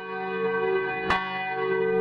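A bell tolling: a fresh stroke about a second in, while the stroke before it is still ringing.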